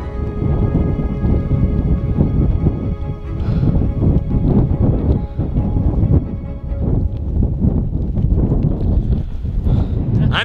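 Background music with sustained tones, under loud, gusty wind rumbling on the microphone.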